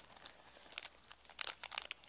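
A small clear plastic parts bag crinkling faintly in the fingers as it is handled, in a few scattered bursts of crackles.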